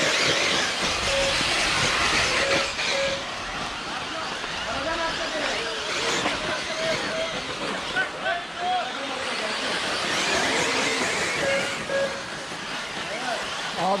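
Electric 1/8-scale RC buggies racing on a dirt track: a steady hiss of motors and tyres, loudest in the first few seconds, with background voices of drivers talking.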